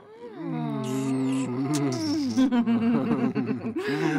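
Human voices chanting a long, drawn-out meditation hum, held on steady pitches that slowly bend.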